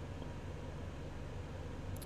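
Steady background hiss with a low hum underneath, with no distinct events: the recording's room tone and microphone noise.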